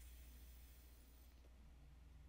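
Near silence over a low steady hum, with a faint high hiss for about the first second and a half: a mouth-to-lung draw through a Geek Bar Meloso disposable vape.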